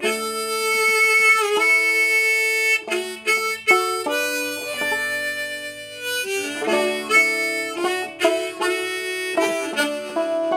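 Harmonica in a neck rack playing an instrumental melody in long held notes, over clawhammer-style banjo picking on an open-back Whyte Laydie banjo.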